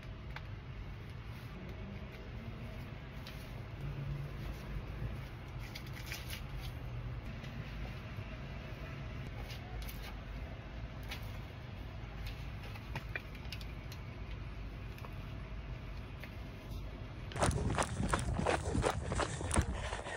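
Faint rustling and small clicks of a running hydration vest being adjusted and strapped on, over a low steady outdoor rumble. Near the end this gives way to louder, quick jolting thuds of running footsteps and movement as she sets off on the run.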